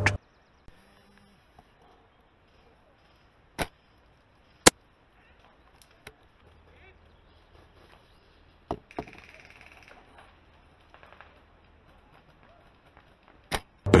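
Silverback Tac41 spring-powered bolt-action airsoft sniper rifle: a few sharp, isolated clicks and snaps from the shot and the bolt being worked. Two come about a second apart a few seconds in, the second the loudest, and more follow past the middle, with faint rustling between.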